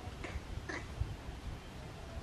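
Young monkey giving two short, high-pitched mewing calls about half a second apart, over a low outdoor rumble, with a soft low thump about a second in.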